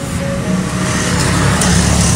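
A steady low engine drone with a rushing noise that swells in the second half, from a boat motor running on the water.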